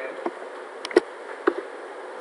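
Computer mouse clicking, two quick clicks about a second in and one more half a second later, over a faint steady electrical buzz.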